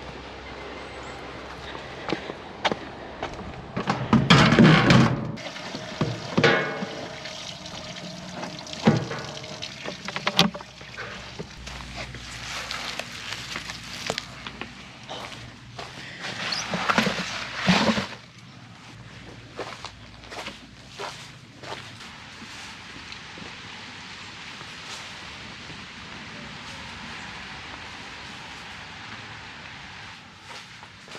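Water pouring and splashing in several bursts, with knocks and clatter of handling, then a quieter steady wash of noise.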